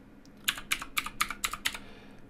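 Computer keyboard typing: about ten quick keystrokes in just over a second, entering a password.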